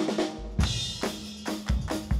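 Segment jingle of drum-kit music: a beat with bass drum, snare and cymbals kicks in about half a second in, with hits about every half second.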